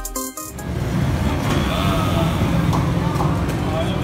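Background music cuts off about half a second in, giving way to steady street noise: motorcycle and traffic engines running, with scattered voices of passers-by.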